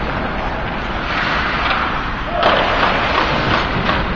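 Ice hockey game noise in a rink: a steady wash of skates on the ice with scattered knocks of sticks and puck, swelling louder and brighter about two and a half seconds in.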